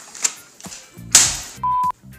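A loud hissing burst about a second in, then a short, steady high-pitched electronic beep near the end, over music.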